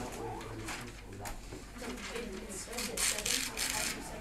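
Indistinct chatter of several students talking in a classroom, with a burst of rustling noise in the last second and a half.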